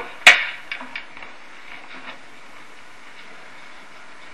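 A single sharp snap of a film clapperboard marking the take, followed by a few faint clicks and then quiet studio room tone.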